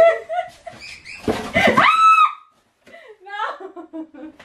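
Two women laughing, with a loud high-pitched squeal in the middle, a brief silence, then more laughter.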